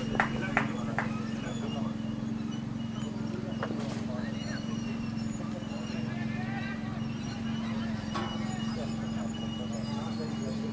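Faint shouts and calls of players across an open cricket field over a steady low hum, with a few sharp knocks in the first second.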